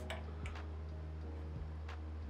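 A few faint metallic ticks of an allen key turning a bolt into a 3D printer's aluminium frame, the bolt only lightly snugged, over a steady low hum.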